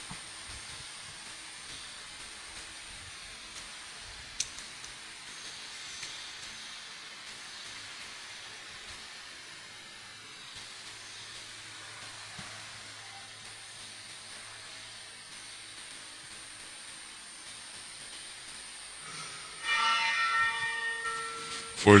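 Steady low hiss of a church microphone's background with a faint hum, broken by one sharp click about four seconds in. A louder pitched sound with overtones comes in near the end.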